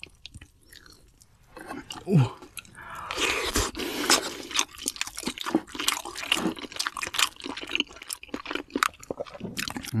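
A person chewing crunchy food close to the microphone: dense, crisp crunches that start about three seconds in and keep going.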